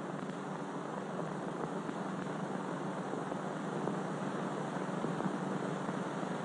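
Steady hiss with a faint low hum, the background noise of an old film soundtrack; no explosion or train sound stands out.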